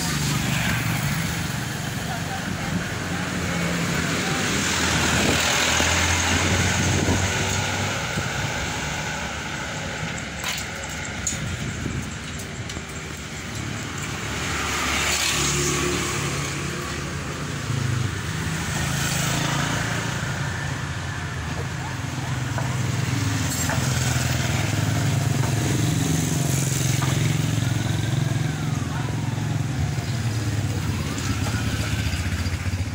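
Motor vehicle engines passing, the noise swelling and fading several times.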